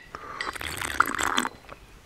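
A drink being sucked up through a straw: a slurping sip lasting about a second and a half, with small clicks, then it stops.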